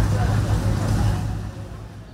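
Low rumble of a motor vehicle running nearby, loudest over the first second and a half and then fading, with faint voices in the background.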